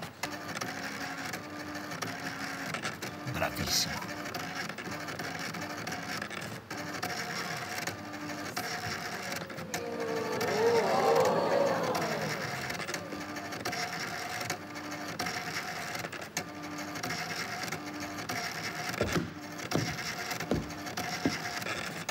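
Retro computer and dot-matrix printer working through a job, a steady mechanical hum broken by short repeated electronic tones. About ten seconds in, a group of voices swells briefly and is the loudest sound, and a few clicks come near the end.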